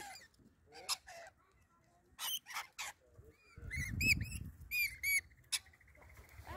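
Rainbow lorikeets screeching in short, shrill calls as they crowd in to feed, with a string of arched, repeated calls in the second half. A low rumble sits under the calls for about a second, a little past the middle.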